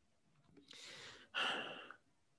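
A person sighing into a headset microphone: a long breath drawn in, then a shorter, louder breath let out near the end.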